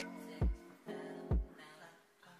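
Background music: sustained chords over a slow beat, with two deep kick-drum hits about a second apart.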